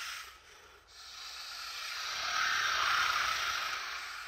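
Electronic hissing noise in an electroacoustic composition, swelling from about a second in to its loudest near three seconds, then easing off slightly.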